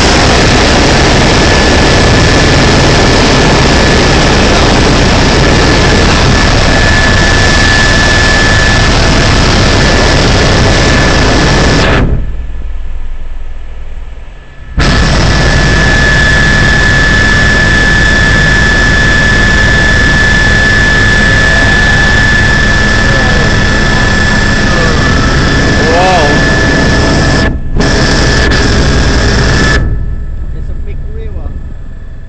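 Helicopter in flight heard from inside the cabin: a loud, steady engine and rotor drone with a steady high whine over it. The sound drops out for about three seconds about twelve seconds in, and again for a moment near the end.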